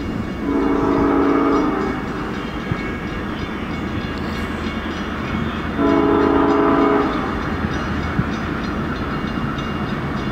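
Air horn of an approaching LIRR diesel locomotive sounding two blasts of a steady multi-note chord, each a little over a second long, about five seconds apart, over the steady rumble of the oncoming train.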